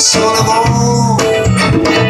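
Live blues band playing an instrumental passage between sung verses: electric guitar to the fore with sustained, bending notes, over piano and hand-drum percussion.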